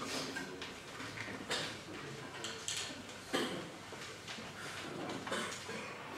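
Low-level room hiss with scattered soft clicks and rustles, as band players handle sheet music and ready their instruments before playing.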